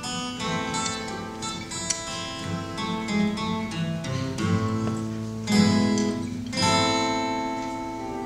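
Two acoustic guitars playing together: picked melody and chord notes, with two louder strummed chords a little past the middle.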